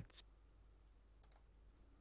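Near silence with a few faint, short computer mouse clicks: one just after the start and two close together a little past a second in.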